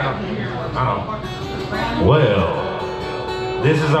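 Acoustic guitar being picked, its strings ringing, with a man's voice talking over it.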